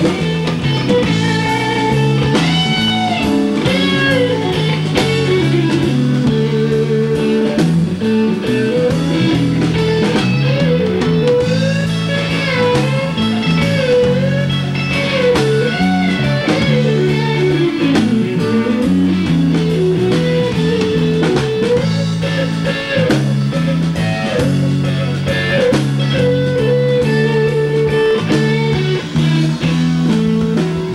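A live blues band plays an instrumental break with no singing. An electric guitar plays a lead line full of string bends over steady rhythm guitar, bass notes and a drum kit.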